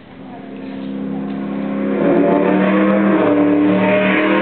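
Opening of a dance music track fading in: sustained chords swell over about two seconds and then hold, with the notes changing near the end.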